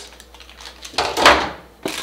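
Packaging being handled: a short, loud rustling thump about a second in as the plastic-bagged bike pedals are moved against the cardboard accessory box, then a single sharp click.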